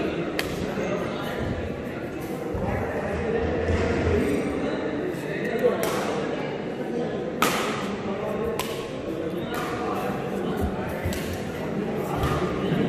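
Badminton rackets striking a shuttlecock: a few sharp cracks, the loudest about seven seconds in, over a steady murmur of spectators' voices in a large hall.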